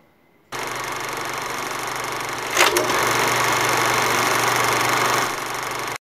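Steady static-like noise hiss that starts abruptly about half a second in, with a short sharper burst a little after two and a half seconds. After the burst it runs slightly louder, then drops back shortly before the end.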